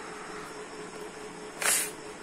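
A single short puff of breath blown into the mouth of a folded-paper origami blowfish, about a second and a half in, to make it shoot open. A faint steady hum runs underneath.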